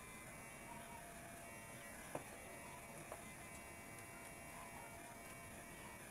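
Near silence: faint room hiss, with two soft clicks about two and three seconds in.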